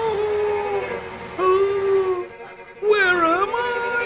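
Background music under three drawn-out, wavering cries, each about a second long, the last rising sharply and then dipping.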